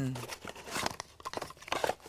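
Crinkling and tearing of a new mobile phone's box packaging as it is handled and opened: a run of quick small crackles.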